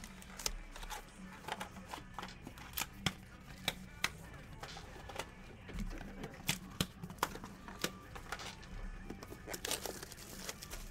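Small cardboard card boxes being handled and set down on a desk: a run of irregular sharp taps and clicks, with some crinkling of packaging.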